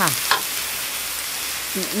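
Bok choy sizzling steadily as it is stir-fried in a metal wok.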